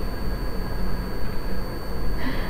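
Steady background noise, a low rumble and hiss, with a faint constant high whine running through it.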